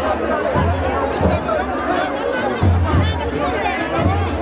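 A festival crowd talking over traditional folk music, with a deep note that sounds in short stretches about every second or so.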